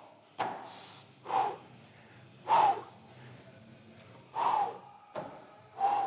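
A man breathing hard after a set to failure: about five short, forceful gasping breaths, a second or so apart. A sharp knock comes just before the first breath and another about five seconds in.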